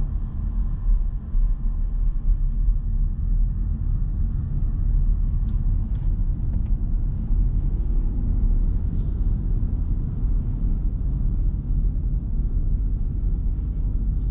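Steady low road and tyre rumble inside the cabin of a Nissan Note e-POWER AUTECH Crossover 4WD driving at low city speed, with a few faint ticks midway.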